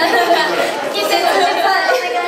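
Several young women talking over one another into handheld microphones, overlapping chatter too tangled for single words to stand out.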